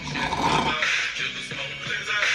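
A man's long, breathy sigh in the first second, over background music from the highlight video.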